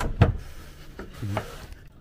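A thin wooden strip being handled, knocking and rubbing against wooden panelling: two sharp knocks at the start, then softer taps and scrapes.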